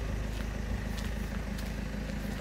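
Steady low rumble of road traffic, with a few faint footsteps on the pavement.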